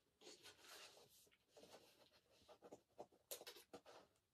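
Faint rustling of paper book pages being handled and turned, with a few soft clicks near the end.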